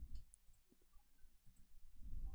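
Near silence: room tone, with a faint computer mouse click or two near the start.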